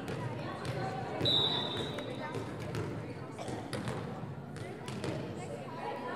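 A volleyball bounced several times on a hard gym floor, with one short whistle blast about a second in and indistinct voices echoing around the gymnasium.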